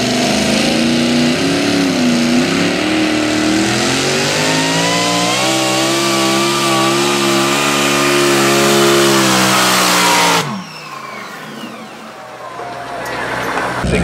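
Pro Mod pulling tractor's engine at full power, hauling the weight-transfer sled down the track. Its pitch climbs over the first several seconds and then holds. About ten seconds in, the engine drops off suddenly and winds down as the pull ends.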